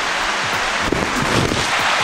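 Shallow rocky river running over stones, a steady, even rush of water.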